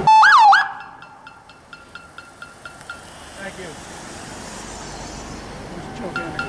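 Police car siren gives a short, loud two-swoop whoop, rising and falling twice in about half a second, then cuts off. A hiss of an approaching vehicle builds in the second half.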